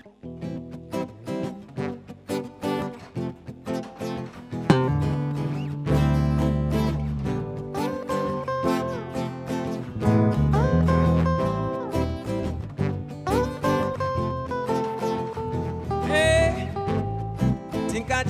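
Live band playing an instrumental song intro: guitars picking a rhythmic pattern, with a five-string electric bass coming in about five seconds in, after which the music is fuller and louder. Sliding melody notes run over it.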